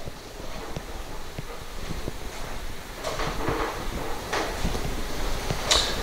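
Jazzy Elite HD power wheelchair turning in place under its electric drive motors, running quietly, with footsteps of someone walking alongside on a hard floor.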